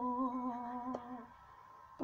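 A man humming one long, slightly wavering note, which fades out a little over a second in.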